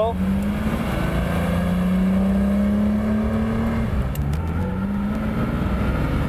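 The 1967 Lamborghini 400 GT's V12 engine pulling the car under acceleration, its pitch climbing steadily for about four seconds. Near four seconds in the pitch drops as it shifts up, then it starts climbing again.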